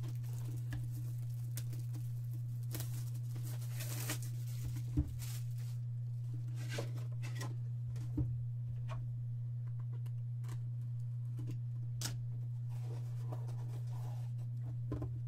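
Cellophane shrink-wrap being torn and peeled off a sealed trading-card box, with scattered crinkles and a few taps as the cardboard box is handled. A steady low hum runs underneath throughout.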